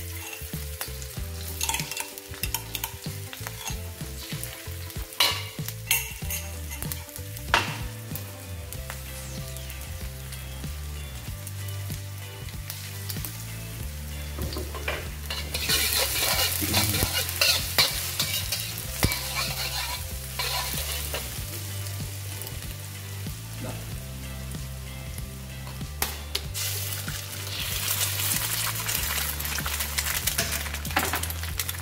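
Onion and garlic frying in oil in a carbon-steel wok, stirred with a metal wok spatula that clicks and scrapes against the pan. The sizzle swells about halfway through and again near the end.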